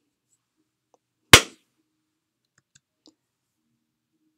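One sharp, loud crack about a second and a half in, dying away within a fraction of a second. It is a deliberately loud sound made to overload the recording input, driving the level too hot and into clipping.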